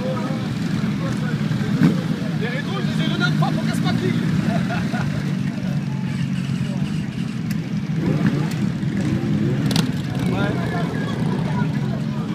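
Several motorcycle engines running at low revs as a slow line of bikes rolls past, a steady low rumble, with people talking nearby. A sharp click about two seconds in and another near ten seconds.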